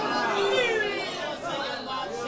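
Speech: several voices talking at once, softer than the address around it.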